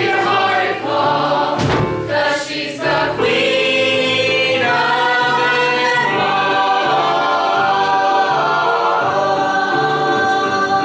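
A stage musical's full cast singing together in chorus, with a few sharp percussive hits about two seconds in, then long held notes.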